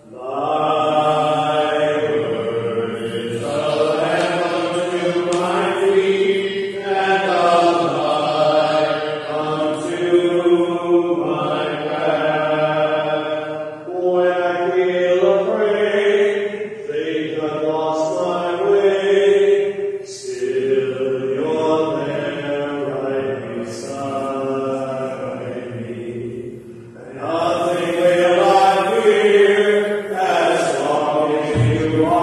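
Liturgical chant sung in long, held phrases with short pauses between them.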